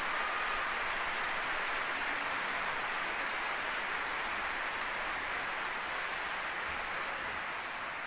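Large concert-hall audience applauding steadily, slowly easing off toward the end.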